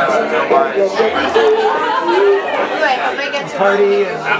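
A group of people chatting at once, several voices overlapping into one murmur of conversation.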